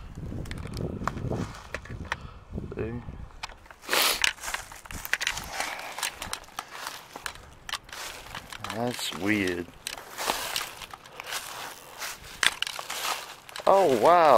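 Footsteps crunching through deep dry leaf litter, with twigs crackling underfoot, in an uneven walking rhythm from about four seconds in.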